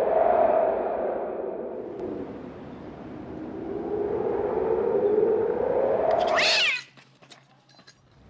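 An eerie, wavering moaning tone in two long slow swells. It ends in a fast rising sweep that cuts off suddenly, followed by near silence for the last second.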